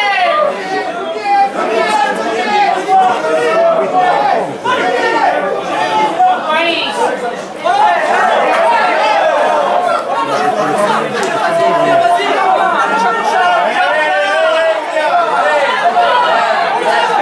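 Several people talking at once: overlapping voices running through the whole stretch, with no one voice standing out as words.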